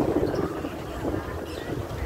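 Wind buffeting a phone microphone: an uneven low rumble.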